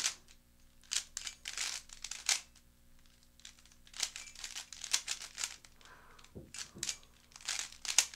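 Stickerless MoYu AoLong v2 3x3 speedcube being turned quickly by hand in a solve: rapid runs of light plastic clicks and clacks as the layers turn, with short pauses about two and a half seconds in and again about six seconds in.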